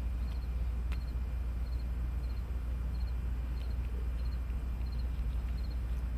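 Steady low hum with short, faint high chirps repeating about twice a second, and a single light click about a second in.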